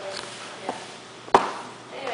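A single sharp knock about two-thirds in, with a fainter tap before it, in a pause between stretches of a woman's speech.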